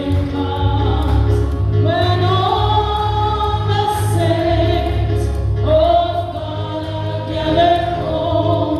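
A congregation singing a gospel hymn together in many voices, with a steady low bass accompaniment underneath.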